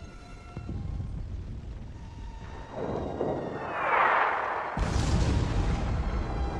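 A rushing sound swells over about two seconds, then a sudden explosion breaks out almost five seconds in, followed by a deep rumble.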